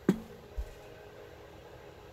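A single sharp click, then a soft low thump about half a second later, over a faint steady room hum.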